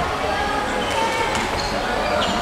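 Volleyball bouncing on the wooden court floor in a large sports hall, under continuous chatter and calls from players and spectators.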